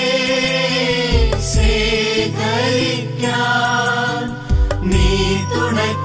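Malayalam Christian devotional music: a chanted, sung melody over instrumental accompaniment with a steady bass and light percussion strokes.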